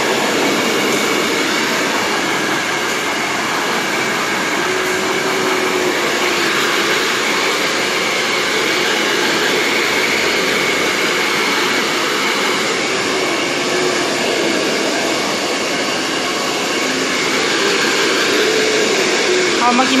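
Hand-held hair dryer blowing steadily on high, a continuous loud rushing hum, while wet hair is dried.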